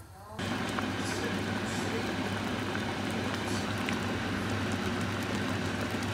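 Soup boiling in a steel pot on a gas hob: a steady bubbling hiss with a low hum under it, starting abruptly about half a second in.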